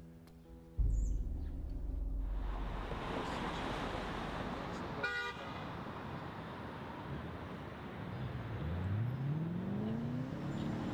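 City street traffic: a steady rumble of passing cars, with a short car-horn toot about halfway through. Near the end a vehicle's engine note rises in pitch as it pulls away. Music fades out in the first second.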